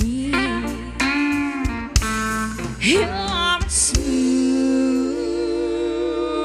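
Live country band playing a slow dance song: guitars with steel guitar and a singing voice, with cymbal hits and a long note held with vibrato from about two-thirds of the way in.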